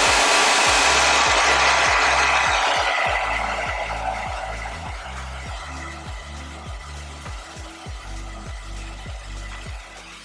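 Handheld hair dryer on a cool setting blowing a steady rush of air, loud for the first few seconds and then fading away over the next few. Background music with a steady bass beat runs underneath.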